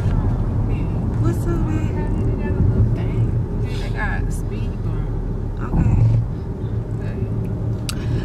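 Steady low rumble of a moving car, with short bits of voices over it.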